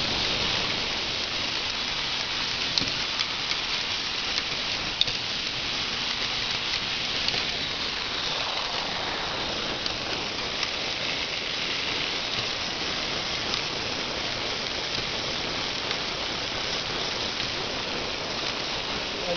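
VEX robot harvester running: its motors drive a plastic tread-link conveyor belt, a steady dense mechanical clatter with a few sharp clicks.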